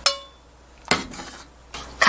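Metal ladle clinking against metal cookware while soup is served: a sharp ringing clink at the start that fades within half a second, then a second, duller knock about a second in.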